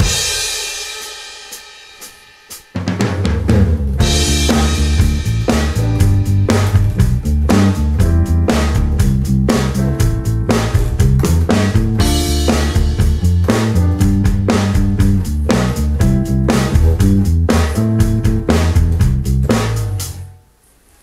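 Electric bass, a Fender Precision Bass, playing a rock groove built only from triad chord tones, with a drum kit. A cymbal rings and fades at the start, bass and drums come in together a little under three seconds in, and the groove stops suddenly at the end.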